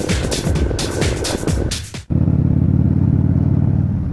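Intro music with a steady beat, cut off suddenly about halfway through by a motorcycle engine running steadily at road speed.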